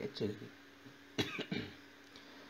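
A short cough about a second in, following the end of a spoken word, over a faint steady hum.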